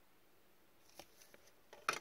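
Trading cards being handled: faint ticks of cards sliding, then one sharp click near the end as a card is set against the clear plastic case holding the pulled cards.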